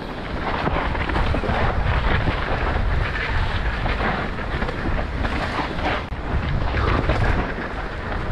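Mountain bike descending a dry dirt and rock trail: knobby tyres rolling and crunching over the ground with the bike chattering over bumps, mixed with wind buffeting the bike-mounted camera's microphone, a loud rough rush that goes on without a break.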